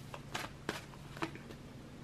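Tarot cards being handled and shuffled by hand: about four light card clicks in the first second or so, then only a faint steady hum.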